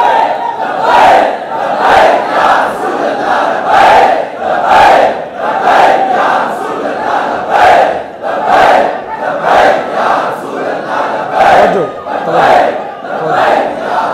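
A crowd of men chanting a slogan in unison, in a steady rhythm of about one loud call a second.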